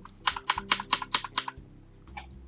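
Computer keyboard keys pressed in a quick burst, about ten keystrokes over a second and a half.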